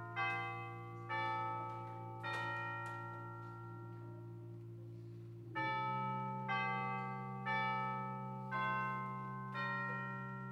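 Church chimes playing a slow tune, one ringing note about every second, each note dying away. A held low chord sounds beneath them and changes about halfway through. The chimes pause for a couple of seconds in the middle, then go on.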